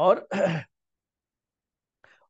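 A man's voice saying one short word, "aur" ("and"), drawn out over the first half second or so.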